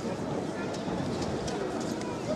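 Arena crowd shouting indistinctly during a kickboxing bout, with a few sharp smacks of strikes landing.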